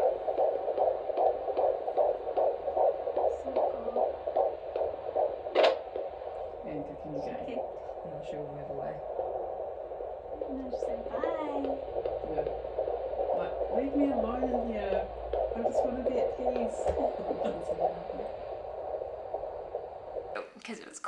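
A handheld fetal Doppler's speaker plays an unborn baby's heartbeat as a fast, steady pulsing. The probe sits directly over the fetal heart rather than the umbilical cord.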